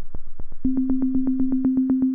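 Reaktor Blocks modular synth patch, two step sequencers clocked at 120 BPM playing sine oscillators through low pass gates: a fast, even run of short plucked clicks, about eight a second. About half a second in, a steady tone on one unchanging pitch joins and pulses in time with them.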